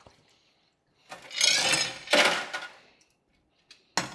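A burst of rushing, splashing water lasting about two seconds as the parts in a stainless ultrasonic cleaner tank are rinsed and the tank drains. A couple of light clicks follow near the end.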